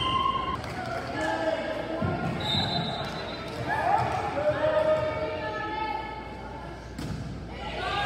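Volleyball match sounds in an echoing gym: players and spectators calling out and cheering, and a volleyball bounced on the hardwood floor. A short, high whistle blast comes about two and a half seconds in, the referee's signal to serve, and a sharp hit about seven seconds in is the serve being struck.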